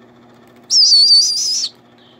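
A barred owl chick gives one high, wavering screech lasting about a second, near the middle, while being hand-fed.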